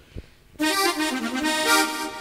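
A few soft knocks, then about half a second in a reedy, harmonium-like keyboard instrument starts a hymn's introduction, playing held notes that step from one pitch to the next.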